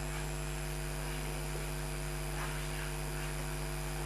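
Steady electrical mains hum with a low buzz and a constant hiss, unchanging throughout.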